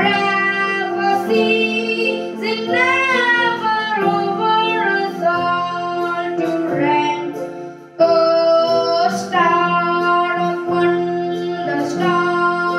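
A child singing a Christmas carol while playing sustained chords on a Roland electronic keyboard. There is a brief break about eight seconds in before the next phrase.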